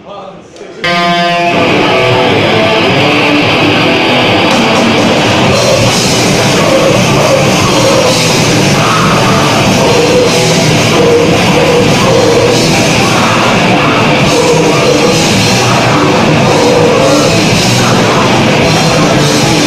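Grindcore band playing live, with guitars and a drum kit: a loud, dense wall of music kicks in abruptly just under a second in and keeps going at a steady level.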